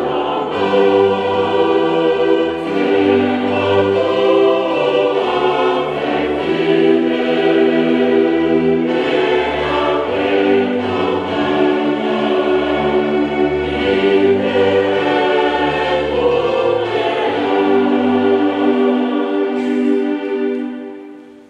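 Music: a choir singing slow held chords over orchestral accompaniment.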